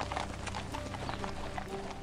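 Horse hooves clip-clopping on stone paving, a run of irregular clops, with background music held underneath.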